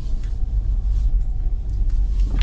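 Steady low rumble inside the cabin of a moving Ineos Grenadier, its BMW B58 turbocharged inline-six running at low road speed.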